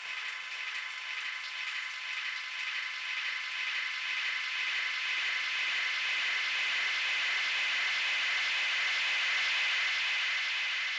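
Electronic DJ mix stripped down to a hissing noise wash with the bass gone, swelling steadily toward the end. High ticks about three a second fade out over the first half.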